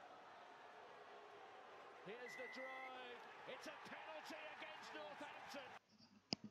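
Faint voices from a rugby match video's own soundtrack over a low background hiss, starting about two seconds in, with a brief steady tone among them. The sound cuts off abruptly just before the end.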